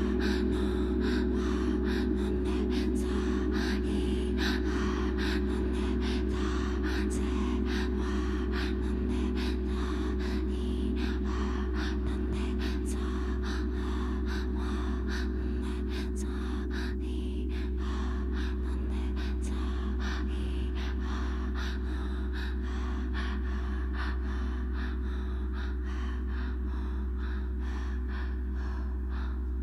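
Ambient drone music from a laptop and looper: a steady low hum and held tones, overlaid with many short breath sounds from a voice at the microphone, a few each second at irregular intervals.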